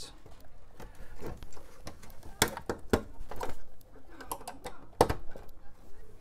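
Plastic AT power-supply connectors being handled and pushed onto a 286 motherboard's power header: a scattered series of clicks and knocks, the loudest about two and a half, three and five seconds in.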